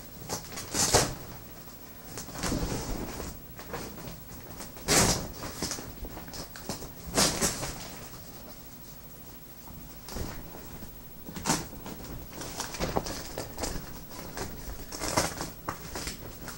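Nylon softbox fabric rustling and its Velcro edge being pulled apart and pressed down while the diffuser panel is fitted, in short, scratchy bursts at irregular intervals.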